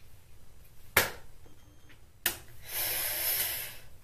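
A synthetic curly wig being handled close to the microphone. There is a sharp tap about a second in, another a little past two seconds, then about a second of rustling hiss as the fibres move.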